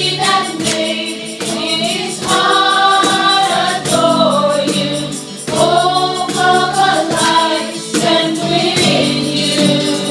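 A small group of female singers performing a Christian worship song into microphones, backed by acoustic guitar, electric guitar and keyboard, with a steady percussive beat.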